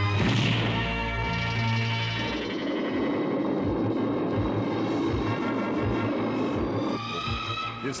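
Cartoon action soundtrack: background music with sound effects, a sudden burst just after the start and a dense rushing noise through the middle, with rising tones near the end.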